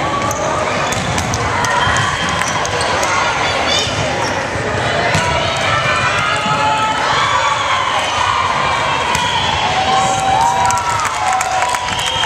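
Volleyball rally in a gym: the ball is struck again and again by the players' hands and forearms, over a steady mix of players and spectators calling out and cheering.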